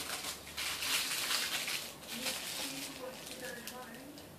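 Plastic piping bag crinkling and rustling as it is handled. The sound is loudest in the first two seconds, with fainter rustles after.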